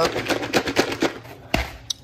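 Popcorn and Flamin' Hot Cheetos rattling inside a lidded plastic bowl as it is shaken to mix them: a fast, uneven run of rattles. A single low thump follows about one and a half seconds in.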